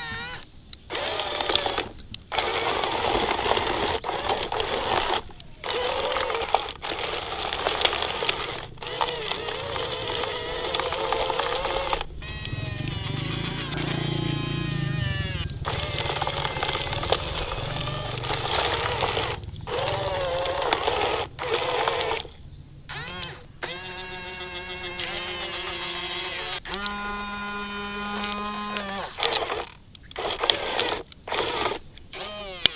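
Electric motors of an S.X. Toys remote-control excavator whining as the boom, arm and bucket move. They run in spells broken by short pauses, and the pitch holds steady, then jumps, near the end.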